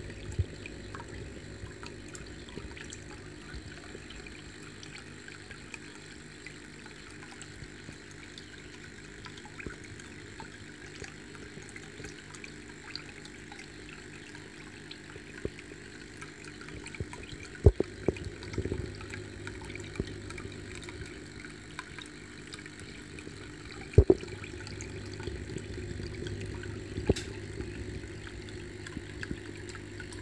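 Aquarium filter running: a steady low hum with trickling water, and a few sharp knocks in the second half.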